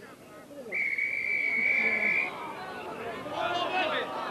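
Referee's whistle: one long steady blast of about a second and a half, stopping play at a scrum that has gone down and awarding a penalty. Voices follow near the end.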